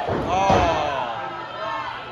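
A thud on a wrestling ring mat about half a second in, the referee's hand slapping the canvas in a pin count, with the crowd shouting along.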